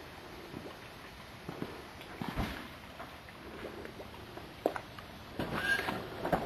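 Faint scattered clicks and knocks over low steady background noise, with a few more close together near the end; no engine is running yet.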